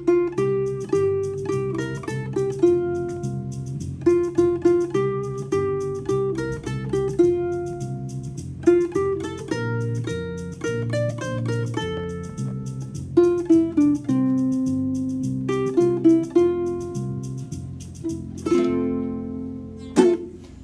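Ukulele picking a single-note melody in F, one plucked note after another, over a fast backing track with a bass line and a steady drum beat. It finishes with a strummed chord near the end.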